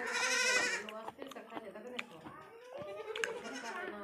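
A goat bleats once at the very start: a short, quavering call. It is followed by quieter low sounds.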